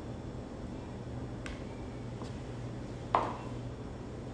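A spoon and a plastic bowl being handled on a table: two faint light clicks, then one clear knock a little after three seconds in as the bowl is set down, over a steady low hum.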